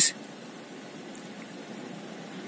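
Steady, even outdoor background hiss, with no distinct events.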